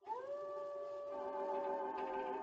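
Spooky Halloween soundscape from a Google Assistant smart speaker: long eerie tones that glide up at the start and then hold, with another tone joining about a second in, in a howl-like, musical wail.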